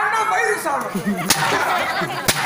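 A single sharp smack of a stage blow about a second in, over loud voices on stage.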